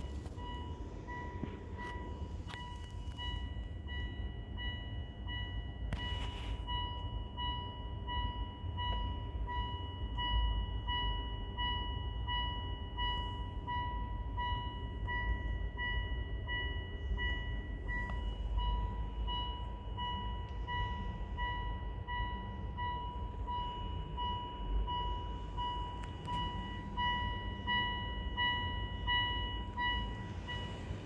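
Mitsubishi Outlander PHEV's electronic warning chime repeating, a high tone pulsing about twice a second without a break, over low rumble from the handheld camera moving through the cabin.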